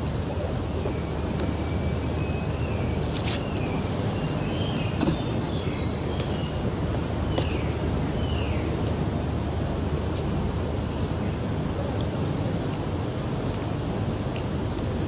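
Steady outdoor ambience of an open ceremonial ground: a broad, even rumble like wind on the microphone. A few faint high whistling calls come over it, and there are two sharp clicks, about three seconds and seven and a half seconds in.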